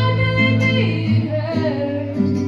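A young woman singing a slow melody into a microphone, accompanied by a nylon-string classical guitar plucked beside her. Near the end her voice drops away and the guitar carries on alone.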